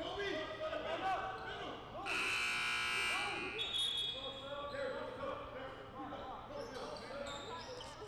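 Gym scoreboard buzzer sounding once for about a second, about two seconds in, signalling a substitution. Around it, sneakers squeak on the hardwood court.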